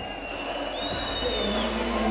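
Arena crowd noise, with a couple of long, shrill whistles from the audience held over the murmur.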